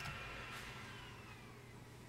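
Quiet room tone, fading slightly, with faint steady high tones and no distinct event.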